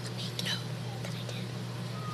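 Faint whispering over a steady low hum.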